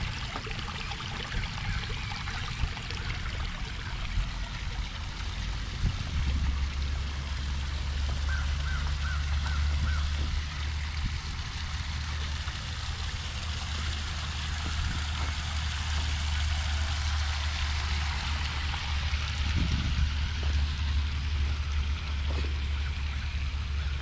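Shallow creek water trickling over rocks, with wind rumbling on the microphone from about six seconds in. A short run of five quick, high notes a little after eight seconds.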